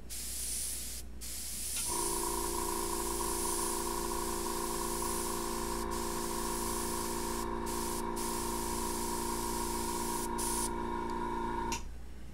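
Airbrush spraying paint in a steady airy hiss, broken off briefly a few times as the trigger is eased. About two seconds in a steady electric motor hum from the air compressor joins it, and both cut off together just before the end.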